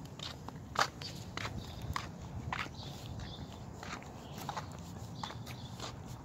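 Footsteps on a concrete sidewalk, a sharp step sound roughly every half second to second, over a low steady background rumble.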